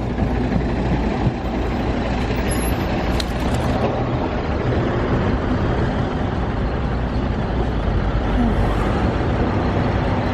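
Bus engine idling close by: a steady low rumble.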